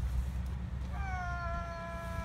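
A boat's horn sounding one long, steady blast that starts about a second in with a slight dip in pitch, over low wind rumble on the microphone.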